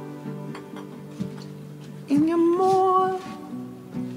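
Acoustic guitar chords ringing out and fading, then a voice singing one long held note over the guitar about two seconds in.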